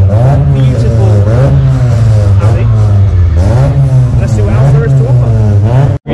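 A car engine running close by and revving up and down repeatedly, with voices mixed in.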